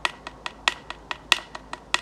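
Sharp percussive clicks keeping a steady beat, about three a second, from a handheld bone or antler object, in the gap between chanted phrases.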